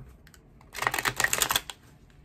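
A deck of tarot cards being shuffled by hand: a quick run of rapid card clicks that starts under a second in and lasts about a second.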